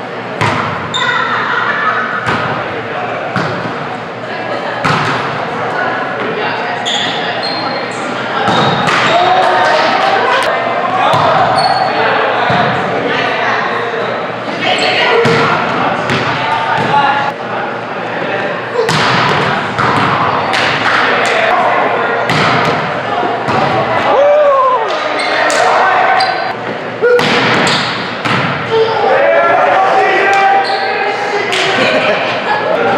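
Volleyball being played indoors: repeated sharp smacks of the ball being served, passed and spiked, under players' shouts and calls, all echoing in a large gym.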